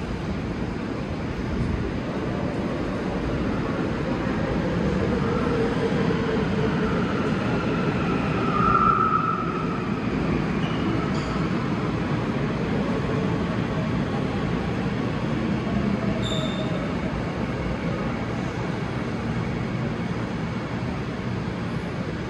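Seoul Subway Line 9 train running into the station and slowing to a stop, heard through closed platform screen doors: a steady rolling rumble with a falling whine as it slows, and a brief squeal, the loudest moment, about nine seconds in.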